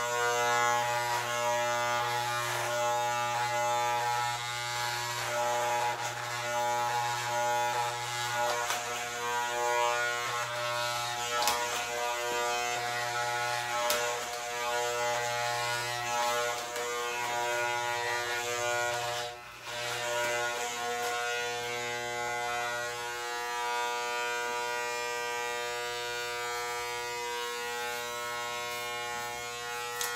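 Corded electric hair clippers buzzing steadily as they cut through short hair on a head, the drone broken by a brief drop about two-thirds of the way through.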